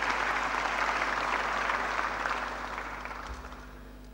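Audience applauding to welcome a speaker to the lectern, the clapping dying away in the last second or so.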